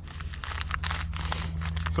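Energy gel sachets crinkling and rustling against stretch fabric as they are pushed into a small side pocket of running tights: a quick, irregular run of crackles.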